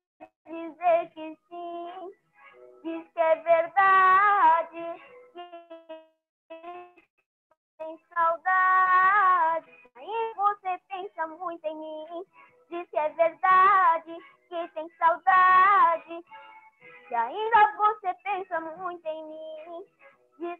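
A boy singing a Portuguese-language romantic pop song solo, in phrases of held notes separated by short breaths. It is heard over a video call.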